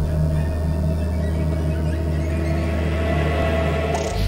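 Channel intro music: a steady, low, dark synth drone with a few held tones above it, which changes suddenly into a new section right at the end.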